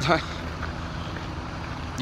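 Steady low rumbling background noise, with a short trailing bit of voice at the very start.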